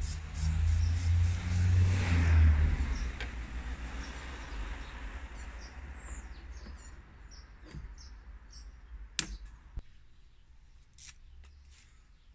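Outdoor background noise: a low rumble and a rush of noise that swells about two seconds in and then fades away, with faint bird chirps. A sharp click about nine seconds in, then a softer one, from hand work in the car's engine bay.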